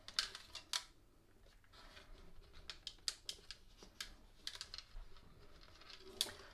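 Faint, irregular light clicks and scratches of fingers handling ukulele strings at a pull-through bridge, feeding them into the body.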